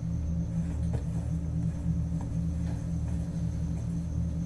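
Low, steady rumbling drone of a horror-style film score, a few held low tones with no beat.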